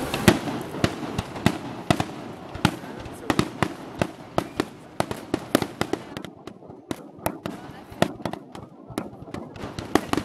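Aerial fireworks display: a rapid, irregular string of bangs and crackles from bursting shells, several a second, the loudest just after the start.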